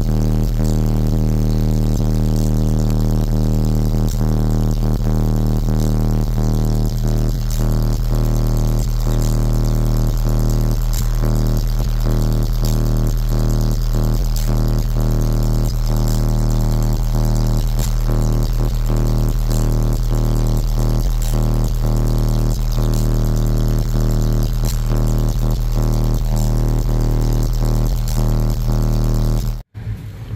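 Two Skar Audio ZVX 18-inch subwoofers in a truck cab holding one steady, loud, low bass note, with crackling panel rattles running through it. It cuts off suddenly near the end.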